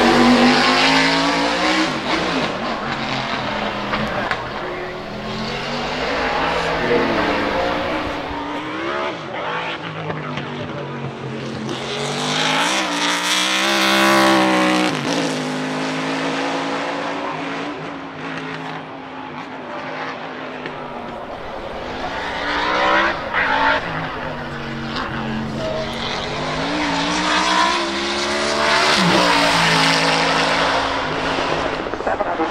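A 1995 Ford Mustang GTS-1 Trans-Am race car's 750 hp Ford V8 revving hard, its note climbing and dropping again and again as it accelerates, shifts and drives past. It is loudest about halfway through and again near the end.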